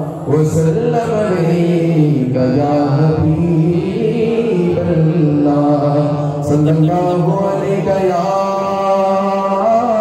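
A man singing a naat, an Urdu-style devotional poem in praise of the Prophet, solo into a handheld microphone over a PA. His voice runs in long, drawn-out, ornamented notes, with brief pauses between phrases.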